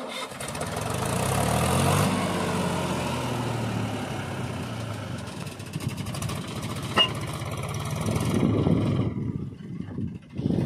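Mahindra 265 DI tractor's three-cylinder diesel engine working under load as it hauls a fully loaded soil trolley. The engine note climbs over the first couple of seconds and then holds steady, with one sharp click about seven seconds in.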